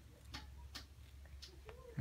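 About four faint, sharp clicks at irregular intervals over a low steady hum, with a brief faint voice sound near the end.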